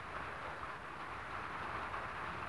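Steady, faint background noise with no distinct events.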